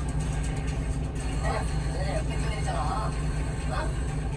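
Steady low rumble of an idling truck engine heard inside the cab, with indistinct voices from a broadcast playing over it in short patches.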